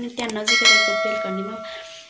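A bright, multi-tone bell chime sound effect of the YouTube subscribe-and-notification-bell kind, struck about half a second in and ringing out, fading over about a second and a half.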